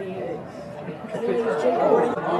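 Indistinct chatter of several voices talking and calling out at once, growing louder near the end.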